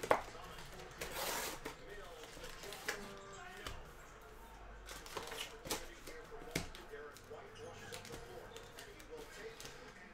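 Soft, scattered taps and rustles of cardboard and foil wrappers as a trading-card hobby box is torn open and its stack of packs is pulled out by hand.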